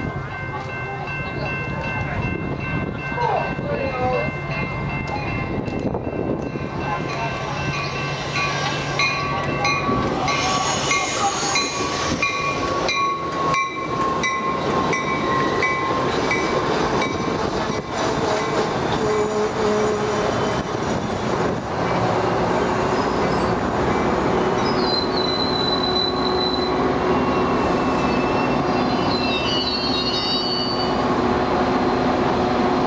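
Metra push-pull commuter train arriving: its horn sounds with a steady chord that breaks into short blasts about ten seconds in. The bilevel cars then roll past and slow, with a high wheel and brake squeal near the end.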